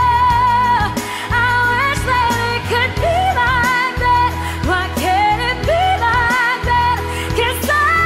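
Recorded OPM (Filipino pop) song: a sung melody with vibrato over sustained bass notes and a steady drum beat.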